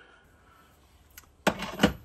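Two sharp clinks of steel lathe tooling being handled, about a third of a second apart near the end, after a faint click and a moment of near quiet.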